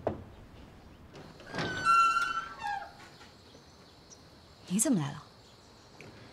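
A wooden door creaking open: a sharp start, then a high, squeaky tone held for about a second.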